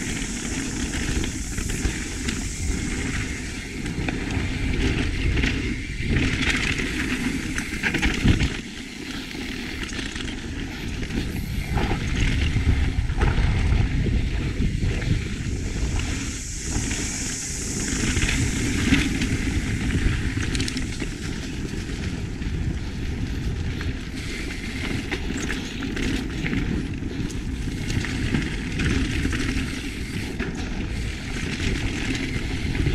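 Mountain bike riding fast down a dirt singletrack: a continuous rush of tyres rolling on dirt and air past the camera microphone, with frequent small knocks and rattles from the bike over bumps.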